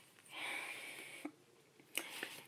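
A woman's breath close to the phone's microphone: a breathy exhale lasting about a second, then a short mouth click near the end.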